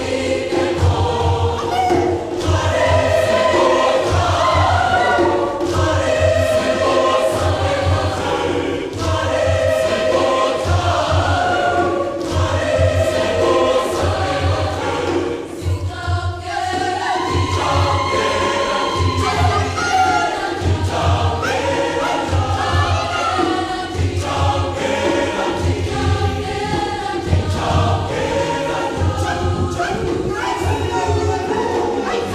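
Mixed youth choir singing a Damara/Nama song in several voice parts over a steady low beat about twice a second, with a short lull about halfway before the singing picks up again.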